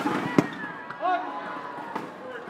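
Two sharp cracks of a badminton racket striking the shuttlecock, about half a second apart, as the rally ends. About a second in, the arena crowd shouts and cheers.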